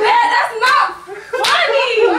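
Open-hand slaps on bare skin as a woman hits a man, over loud overlapping voices and laughter.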